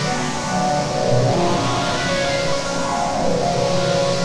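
Cinematic synthesizer improvisation played live on a keyboard through LMMS's TripleOscillator 'Erazzor' preset. Overlapping sustained notes form a slowly shifting melody over a low bass.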